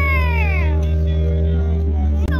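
A long meow, falling in pitch and fading within the first second, over a steady low hum.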